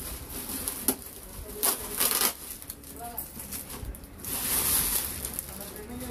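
Cardboard and plastic packaging being handled: a few short knocks and crackles, then a longer plastic rustle about four seconds in, as a power amplifier in a plastic bag is pulled out of its box.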